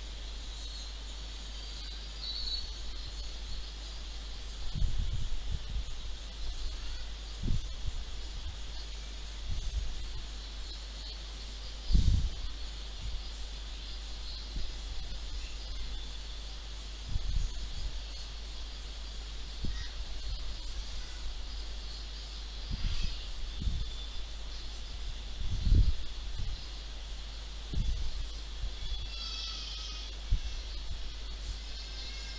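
Background room noise: a steady low hum with a faint high-pitched hiss, and a soft low thump every few seconds, the loudest about twelve seconds in and again near the end.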